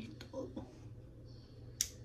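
A single finger snap, sharp and short, near the end.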